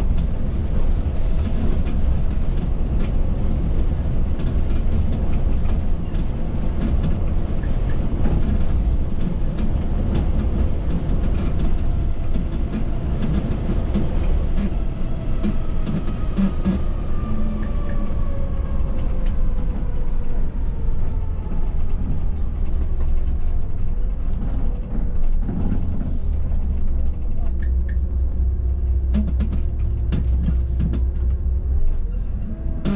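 Inside the cab of a Volvo B9R coach on the move: a deep, steady engine and road rumble with frequent small rattles and clicks from the cab fittings. Past the middle, a whine falls slowly in pitch over several seconds, and a steady hum comes in near the end.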